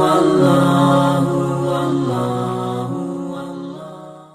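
A sustained chanted voice holding long notes, the melody stepping slowly lower and fading out near the end.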